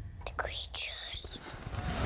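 Faint whispering in a quiet stretch of a film trailer's sound design, with soft high breathy glides rising and falling, over a low rumble that swells near the end.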